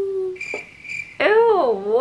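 A young woman's voice making drawn-out, sing-song sounds: a long held note that sinks slowly, a high steady tone, then a swooping "ew" that rises and falls.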